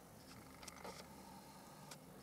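Near silence: quiet room tone with a low hum and a few faint clicks.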